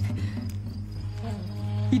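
Background music underscore: a low sustained drone, with faint held notes coming in about a second in.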